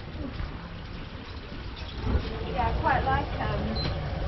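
Street background: a steady low rumble, joined about halfway through by indistinct voices.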